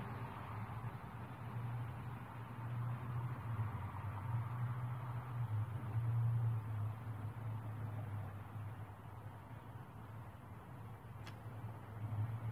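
Steady low background rumble that swells a little around the middle and eases off again.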